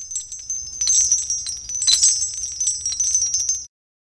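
High, shimmering chimes: a dense run of quick tinkling strokes and ringing tones that cuts off suddenly near the end.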